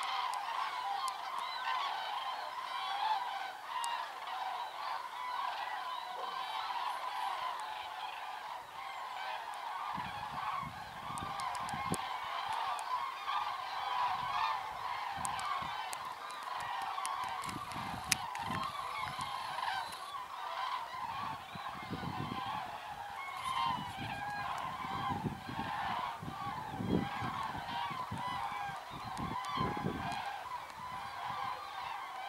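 A large flock of migrating common cranes calling overhead, many birds trumpeting at once in a continuous overlapping chorus. From about a third of the way in, irregular low rumbles join the calls.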